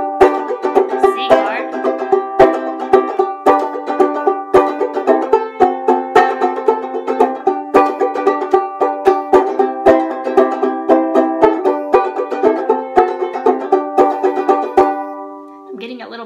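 Kmise banjolele (banjo ukulele tuned G-C-E-A) strummed loudly in a run of chords starting on G, with a twangy banjo tone and a few chord changes, ringing out near the end. A buzz is put down by the player to the clip-on tuner vibrating on the headstock.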